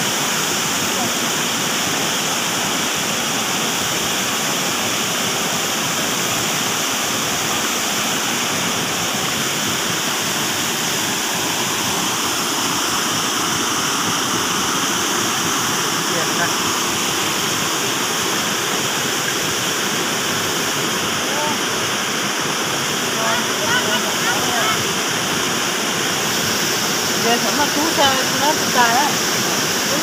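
Water of a stream rushing steadily over rocks, a constant loud hiss with no pauses. Faint voices break in briefly near the end.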